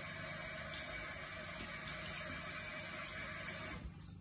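Kitchen tap running steadily onto a paper towel held in the stream over a ceramic sink, soaking it wet; the flow stops just before the end.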